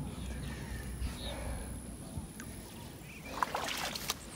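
Faint sounds of someone moving out of shallow water through vegetation: light sloshing and rustling with a few small ticks.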